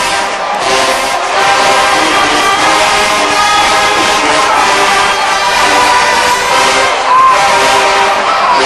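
A large marching band playing, brass to the fore, holding sustained notes, with a stadium crowd cheering underneath.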